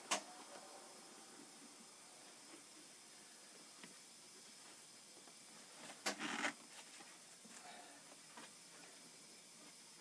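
Faint handling noises from a heated, softened PVC pipe being worked by hand, over a steady low hiss. There is a sharp knock just after the start and a short scraping rustle about six seconds in.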